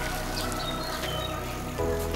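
Background music with held chords, moving to a new chord near the end.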